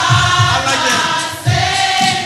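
Gospel praise singing: several voices singing drawn-out, sliding notes through microphones, with a short dip in level about one and a half seconds in.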